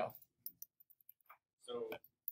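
Two faint computer mouse clicks about half a second in, then a brief bit of voice near the end.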